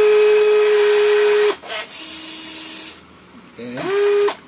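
WLtoys 16800 RC excavator's electric arm motors running: a loud steady whine that cuts off suddenly about a second and a half in, then a fainter, lower whine for about a second as the arm is brought back to its starting position.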